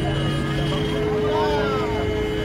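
Murmur of voices from a gathered crowd over a steady low hum and rumble, with one voice rising and falling about one and a half seconds in.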